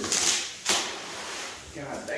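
Cardboard shipping box being pulled open by hand: a scraping rustle of the flaps, then a sharp snap of cardboard about two-thirds of a second in.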